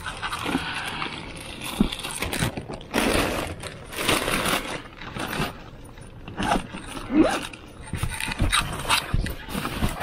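Plastic and fabric grocery bags rustling and crinkling as they are handled and set down on a car's back seat, with soft knocks and a few short squeaks.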